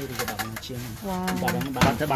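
Knocks of a wooden hand loom weaving silk, the loudest just before the end, over low voices and a held low tone.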